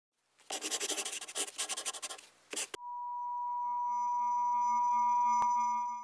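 A scratchy, rubbing noise in quick strokes for about two seconds, then a short burst. After that a single steady electronic beep tone starts, swells slowly, clicks once near the end and fades out.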